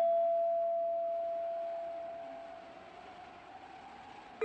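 A single struck gamelan metallophone note ringing on as one steady tone and slowly dying away over about three seconds, a held pause in the Jaipong dance accompaniment.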